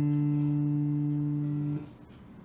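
A single plucked note on the new D string of a cigar box guitar, ringing steadily on one pitch and then damped suddenly near the end. The string is being sounded to check its pitch after stretching; it is holding close to tune, only about an eighth of a step flat.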